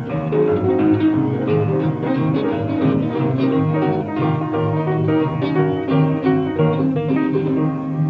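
Instrumental stretch of a 1950s Chicago blues recording: guitar playing a busy boogie line over a steady bass, with no singing.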